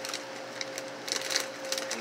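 A foil-lined chip bag crinkling faintly as it is handled and pulled open, over a steady low hum.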